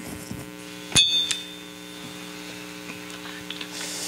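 A sharp metallic strike about a second in, ringing briefly with high tones, followed by a smaller second strike, over a steady hum.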